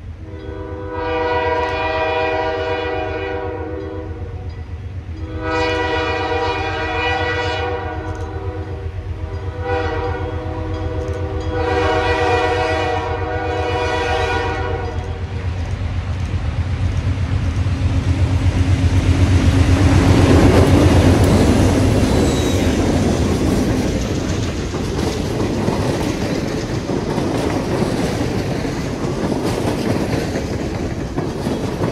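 A pair of Montreal Locomotive Works diesel locomotives blow their air horn for a grade crossing: long, long, short, long. The engines then pass close by, loudest about 20 s in, followed by the passenger cars clicking over the rail joints.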